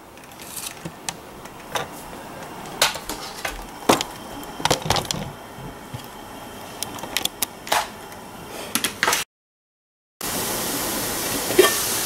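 Scattered knocks and clicks of an aluminium steamer basket being handled and set about on the stovetop. After a brief cut, a steady hiss of water at a rolling boil in a large aluminium pot.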